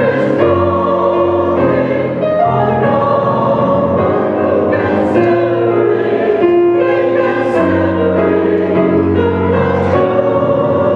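Mixed church choir of men's and women's voices singing an anthem in parts, holding long sustained notes.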